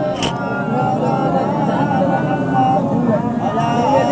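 A man's voice, amplified through a microphone, preaching in a drawn-out, melodic style with long, wavering held tones.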